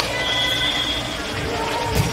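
Volleyball match in a gym: a sharp slap of a hand on the ball near the end, over spectator chatter, with a thin high whine lasting about a second near the start.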